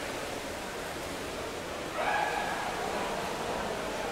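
Steady hiss of water heard through an underwater microphone in a pool during play, with a brief pitched sound about two seconds in that lasts about a second.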